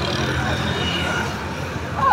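Steady road traffic noise from motorbikes and scooters passing on a busy road, with people's voices in the background.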